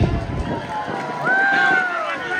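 A stage performer's voice: talk, then a long held call starting a little past a second in that slides down in pitch at its end.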